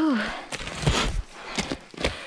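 A breathy, falling "whew" of exertion, then several footsteps on a steep, snow-covered trail.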